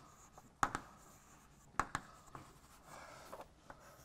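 Chalk writing on a blackboard: a few sharp taps about half a second in and just before two seconds, then a softer scratching stretch near the end.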